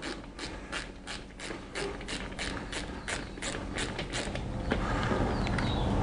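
Ratchet wrench clicking steadily, about three clicks a second, while backing out the seat-mounting bolt of a Harley-Davidson motorcycle; the clicking stops about four seconds in and a steady noise grows louder after it.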